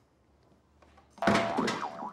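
Near silence, then about a second in a short, loud comic sound effect with a wobbling, bending pitch, lasting under a second.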